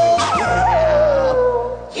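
A woman singing one long held note over a karaoke backing track. The note swoops up and back about half a second in, then slides slowly down and breaks off near the end.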